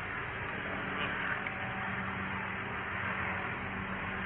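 Steady outdoor background noise: an even hiss with a constant low hum underneath and no sudden sounds.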